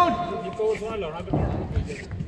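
Men's voices talking.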